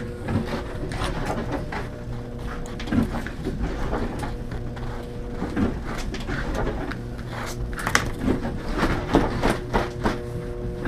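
Scattered rustles and light knocks as a dried pine marten pelt is handled and brushed with a slicker brush on a work table, a few sharper ones near the end. A steady machine hum runs underneath.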